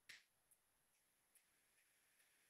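Near silence: room tone, with a very faint click just after the start.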